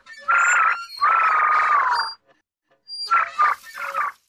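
A cartoon robot's electronic voice: a short warble, then a long held electronic tone that dips in pitch at its end, and a run of quick chirps near the end.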